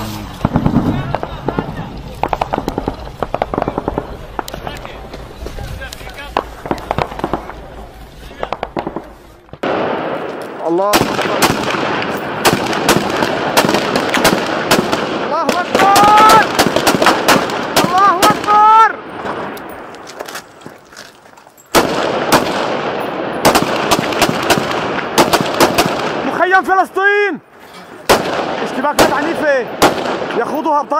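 Volleys of rifle gunfire, many rapid shots overlapping, with men shouting over them. The first third is quieter, a low rumble with scattered pops. Then loud firing starts abruptly about ten seconds in.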